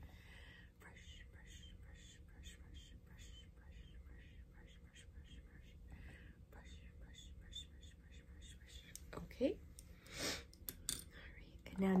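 Soft makeup brushes stroked over the microphone: a regular run of faint swishes, about two or three a second, with a few louder rustles near the end.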